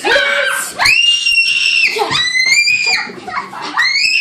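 A child screaming in rough play: a short shout, then three long high-pitched screams of about a second each, the last near the end.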